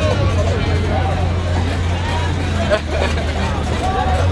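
Overlapping voices and chatter around the ring, over a steady low hum.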